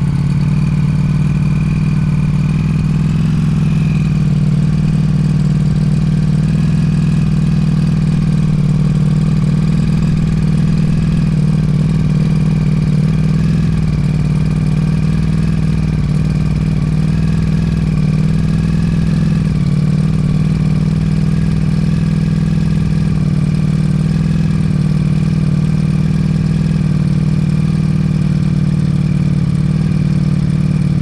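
2022 Ducati Panigale V4 S's 1103 cc V4 engine idling steadily just after a cold start, on its slightly raised cold-start idle.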